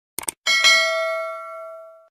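Subscribe-button sound effect: a quick double click, then a bright notification-bell ding that rings on with a few steady tones and fades away near the end.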